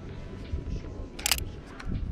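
Canon 5D Mark IV DSLR shutter firing once, a short sharp click about a second and a quarter in, over a low steady street background.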